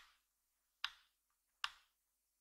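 Three sharp clicks about 0.8 s apart, each dying away quickly, from a Canon G7X Mark II compact camera being handled.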